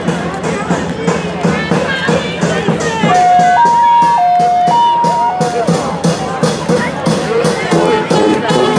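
Parade crowd chatter over a steady beat. A clear two-note tone alternates low and high twice, about half a second per note, for a couple of seconds in the middle, then slides down.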